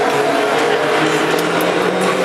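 Steady drone of race car engines running on the speedway oval, heard from the grandstand, with a low engine note rising slightly in the second second.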